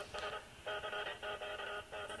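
A quiet chord of steady buzzing tones, switched on and off in short bursts a few times a second in an uneven on-off pattern.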